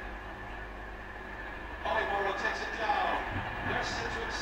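Steady low room hum with a thin high whine. About two seconds in, indistinct voices come in, picked up in the room from the soundtrack of projected hurling footage.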